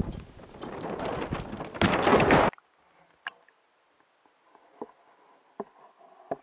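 Rushing water and wind noise with sharp splashes and clicks on the microphone of a camera at the lake surface, getting louder until it cuts off suddenly about two and a half seconds in as the camera goes under. After that only a faint, muffled underwater hush with a few soft knocks.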